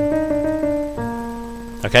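Yamaha digital piano playing the closing of a jazz phrase: a held chord with a few melody notes over it, then a new chord struck about a second in and left to ring and fade.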